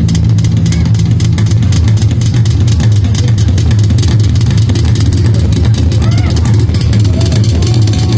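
Amplified street rock band, its guitars and bass holding low steady notes through a PA, with crowd voices over it.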